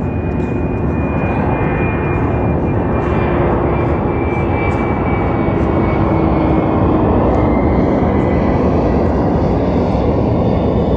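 A propeller or jet airplane passing overhead: a steady, loud engine roar that slowly builds, its tones gliding gradually downward in pitch.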